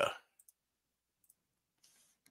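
The end of a man's spoken word, then near silence broken by a few faint short clicks, two close together about half a second in and another just past a second.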